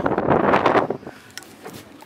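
Wind and handling noise on the microphone for about the first second, then dropping to a quieter stretch with a couple of faint clicks.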